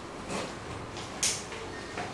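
Paper rustling close to a handheld microphone as sheets are shuffled: two brief rustles, a softer one about a third of a second in and a sharper, louder one just past a second.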